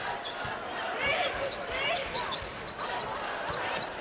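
A basketball being dribbled on a hardwood court during live play, with arena crowd noise and shouting voices around it.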